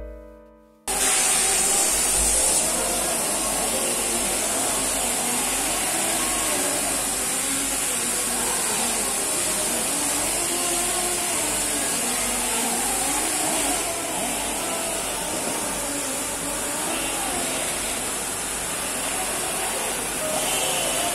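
A hand-held power tool, fed by a hose or cable, starts about a second in and runs steadily as it works the surface of a metal bust, with a loud, even high-pitched hiss.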